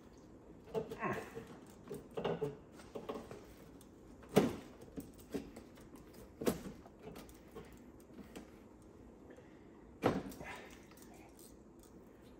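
Porsche Cayman 987 front radiator being worked loose by hand from its plastic mounts: rustling and handling noise with three sharp knocks, about four seconds in, six and a half seconds in and just after ten seconds.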